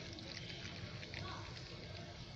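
Homemade liquid fertilizer poured in a steady stream from a large plastic bottle into a small bowl: a quiet, continuous trickle and splash.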